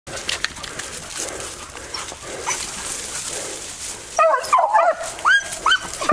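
Beagle baying at a wild boar: a run of short yelping bays that rise and fall in pitch, starting about four seconds in. Before that, a crackling, rustling noise of brush.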